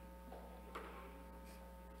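Quiet room tone under a steady electrical mains hum, with a faint click about three-quarters of a second in.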